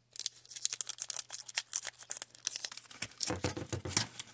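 Foil Pokémon booster pack wrapper crinkling in the hands, a dense run of sharp crackles. Near the end it gets heavier and fuller as the pack is torn open at the top.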